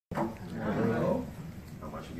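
A person's voice speaking briefly as the recording cuts in, the words not made out.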